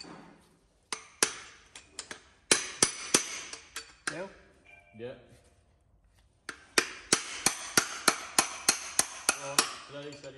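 Hammer striking the steel hub of a gear in a Chieftain tank gearbox to drive it out of the housing, each blow a sharp metallic clink with a short ring. There are a handful of separate blows at first, then a quick steady run of about four blows a second near the end.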